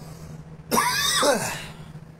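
A man clearing his throat once, loud and about a second long, starting just under a second in.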